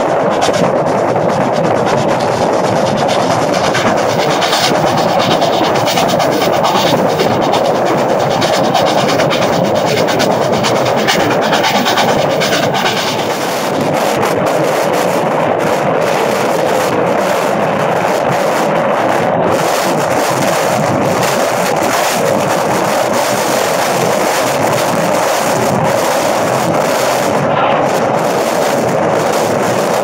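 Passenger train running at speed, heard from an open car window: a loud, steady rush of wind and wheels on the rails.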